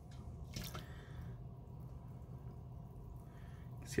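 Faint small water sounds from a fossil dig brick held down in a steel bowl of warm water, with air bubbles rising out of the soaking brick.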